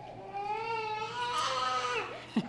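Infant crying: one long wail that rises slightly in pitch.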